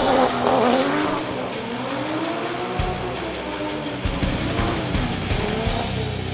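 Nissan Silvia drift car sliding, its engine rising and falling in revs as the throttle is worked, with tyres squealing on the tarmac. Background music plays under it.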